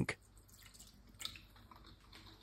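Faint splashing of an energy drink poured from a plastic bottle into a frying pan, with a single soft tick about halfway through.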